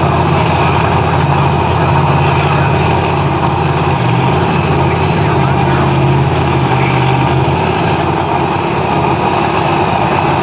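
A 526-cubic-inch Keith Black V8 in a Pro Street drag car idling steadily with a deep, even rumble and no revving.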